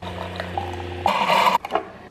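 Coffee maker's pump humming steadily as it brews into a glass mason jar, then a louder hissing sputter about a second in as the brew ends, followed by a few short clicks as the jar is taken away.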